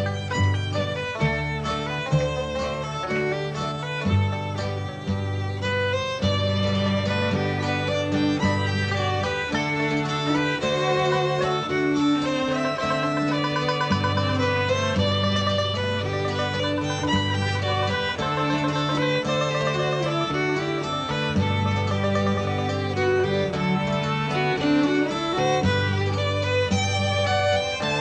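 Irish folk band playing an instrumental tune, the fiddle carrying a busy melody over banjo, acoustic guitar and cello, with held bass notes underneath.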